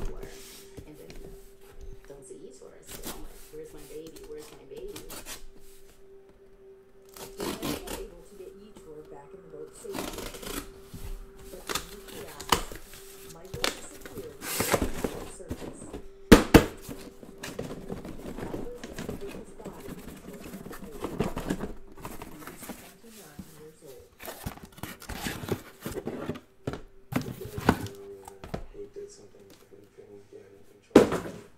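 Cardboard shipping case being opened and unpacked by hand: tape tearing, flaps and cardboard rustling, and irregular knocks as the boxes inside are handled, the sharpest knock about midway. A steady faint hum runs underneath.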